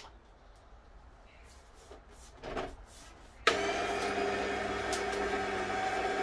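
Fridja masticating slow juicer switched on about three and a half seconds in, its motor running empty with a steady hum; it starts because the juicer is fully assembled with the lid locked. A brief soft knock comes shortly before.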